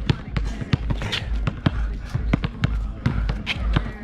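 Basketball being dribbled on an outdoor asphalt court, a string of sharp bounces at about three to four a second.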